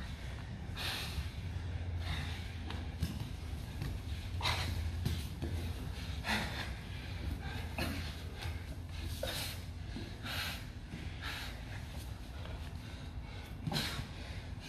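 Heavy breathing of two grapplers under exertion: sharp, noisy exhales through nose and mouth, irregular and roughly one a second, over a steady low hum.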